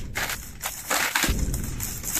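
Crumpled brown packing paper crinkling and rustling in irregular bursts as ferrets burrow through it inside a cardboard box, with a low bump a little past halfway through.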